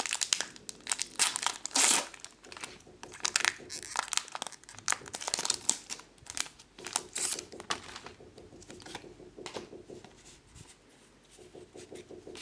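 A Pokémon TCG booster pack's crinkly foil wrapper being torn open and crumpled by hand, in quick sharp crackles that are loudest in the first couple of seconds. The crackling then thins out to quieter rustling as the cards are taken out.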